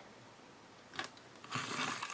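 Mostly quiet room tone, with one faint click about halfway through and soft handling noise near the end, made by hands handling small crafting items on a table.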